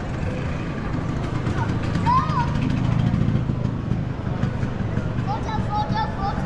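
Street ambience: passersby talking in the background over the low rumble of a passing vehicle, loudest two to three seconds in.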